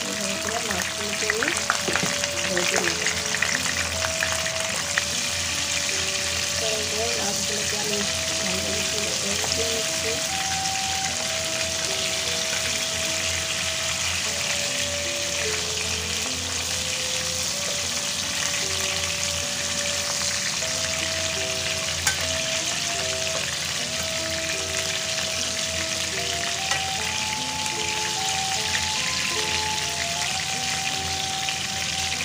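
Whole poa fish shallow-frying in hot oil in a non-stick pan, with a steady sizzle. A steel spatula scrapes the pan and turns the fish, most busily in the first few seconds.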